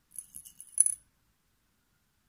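Pearl beads clicking against each other and against a glass bowl as fingers pick one out, a quick run of small clinks with one sharper clink just under a second in, stopping at about a second.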